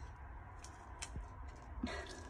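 A few faint clicks and rustles as a small child handles a strip of paper, the last one a little louder near the end.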